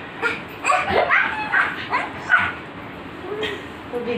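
A young child's short, high-pitched squeals and yelps during rough play, several quick calls that rise and fall in pitch in the first two and a half seconds, then quieter.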